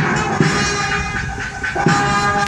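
A band playing the national anthem in slow, long-held chords of horn-like tones.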